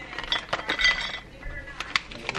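Cashews and dried cranberries poured from a clear plastic snack cup onto a plate, clinking and rattling as they land, with the thin plastic cup crackling in the hand. A sharper click comes near the end.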